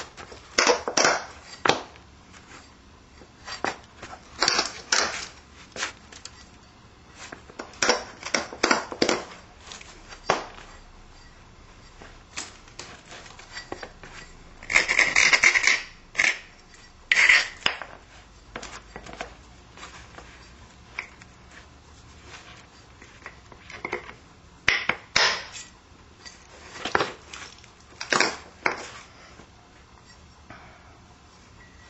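A stone Clovis point being knapped with an ivory punch: sharp clicks and scrapes of stone on ivory in short clusters every few seconds, with a longer scratchy burst about fifteen seconds in.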